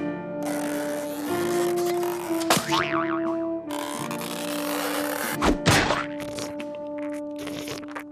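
Cartoon background music of held, changing notes, with comic sound effects over it: a springy boing that glides down in pitch about two and a half seconds in, and a sharp thunk about five and a half seconds in.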